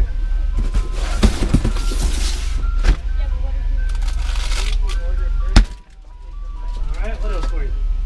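Ice cream truck jingle playing a simple chiming tune, with rustling and clicks of things being handled, and one loud knock about five and a half seconds in.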